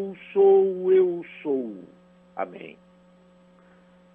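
A voice intoning drawn-out, held syllables of a prayer invocation ("Eu sou..."), stopping about two seconds in. A faint steady electrical hum is left underneath.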